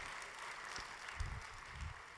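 Audience applauding, faint and steady.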